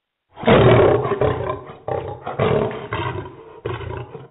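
Recorded lion roar played as a sound effect: a loud roar starting about half a second in, followed by a few shorter roars that grow fainter.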